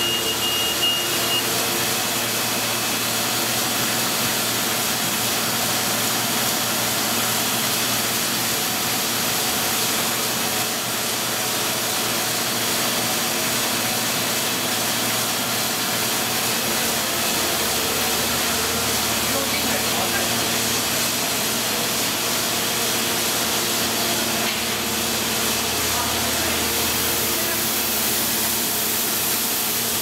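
Steady machine noise of a running Heidelberg SM 74 sheetfed offset printing press: an even hum with a constant airy hiss over it.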